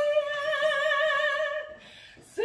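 A woman singing unaccompanied in an operatic style: one long held note with vibrato, which ends near the end and is followed by a short pause.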